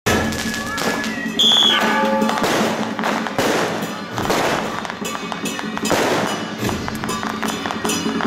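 Traditional Chinese percussion for a dragon dance, with drums, gongs and cymbals playing, a steady ringing tone under dense crackling strokes that fit firecrackers. A brief high whistle sounds about one and a half seconds in.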